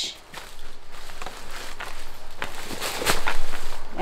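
Light clicks, knocks and rustling as plastic bath-product bottles and a small box are handled and set down among crinkle paper shred in a gift basket, busier near the end.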